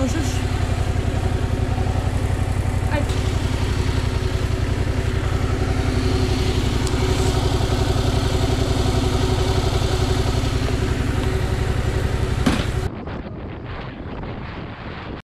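Yamaha MT-07's parallel-twin engine idling steadily while the bike stands still. About a second before the end it cuts to wind noise on the microphone.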